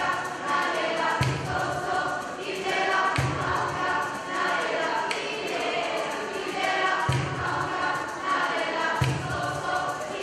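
A youth choir singing together, many voices on held notes, with a low thump about every two seconds.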